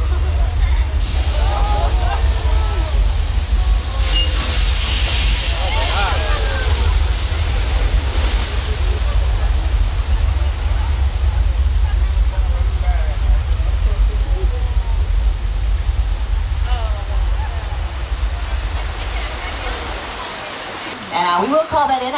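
Staged flash flood: a torrent of water surging down a set street and pouring through a stone channel, a loud steady rush with a deep rumble beneath it that stops about twenty seconds in. People's voices call out faintly over the water.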